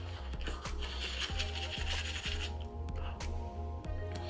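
Manual toothbrush scrubbing back and forth on teeth, a soft scratchy rubbing over background music with a steady bass line.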